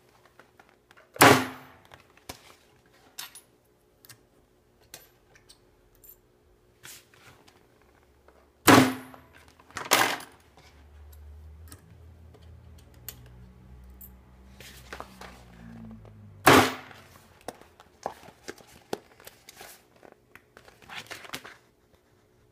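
Micron America MIC-02 electric grommet press punching and setting self-piercing grommets and washers (#4 and #3) into strap webbing: four loud, sharp strokes about 1, 9, 10 and 17 seconds in, with small clicks between them.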